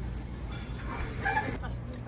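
A chicken clucking, a short call about a second in, over a steady low hum.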